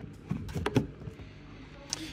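An Ionity fast charger's CCS connector being pushed into a Volkswagen ID.7's charge port. There are a few short plastic knocks as it goes in and a sharp click near the end as it seats.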